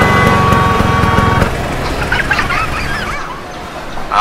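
A vehicle horn sounding steadily for about a second and a half over traffic rumble, after which the traffic noise carries on and gradually fades.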